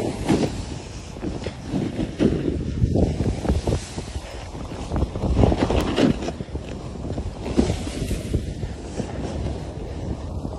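Wind rushing over the microphone of a camera carried downhill at speed, with the scrape and hiss of edges carving through snow, rising and falling in uneven surges.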